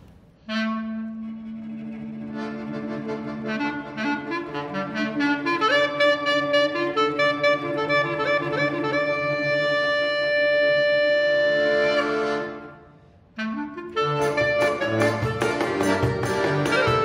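Clarinet playing a slow, free-rhythm klezmer doina, with melodic runs and long held notes over a sustained low note. After a brief pause near the end, the band comes in with a fast, steady dance beat: the start of the freylach.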